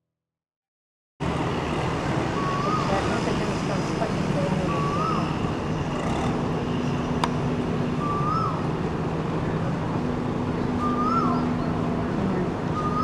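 Steady traffic and engine rumble with a bird repeating a short rising-and-falling call about every two to three seconds. The sound cuts in suddenly about a second in, after silence.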